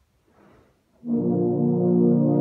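Euphonium and baritone ensemble coming in together about a second in with a loud, sustained chord of several held notes.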